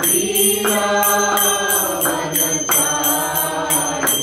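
Devotional mantra chanting (kirtan) with small hand cymbals (karatalas) striking a steady beat about three times a second, the cymbals ringing on between strokes.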